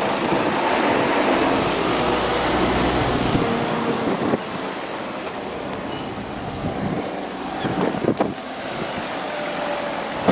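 Articulated lorry with a refrigerated trailer passing close by, its diesel engine rumble and tyre noise loud for about the first four seconds before cutting off abruptly. After that comes quieter outdoor background, with a few sharp clicks near the end.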